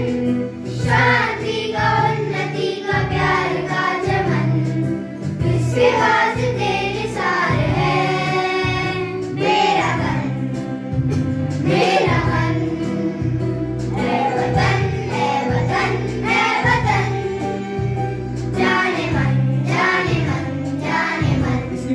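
A group of children singing a Hindi patriotic song together with a man. A Yamaha electronic keyboard accompanies them with a steady rhythm and bass.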